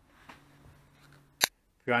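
Faint background with a weak steady low hum, broken about a second and a half in by a single very short, sharp click. A man's narrating voice begins at the very end.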